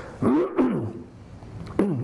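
A man coughing twice into a microphone in the first second, the coughs voiced and throaty.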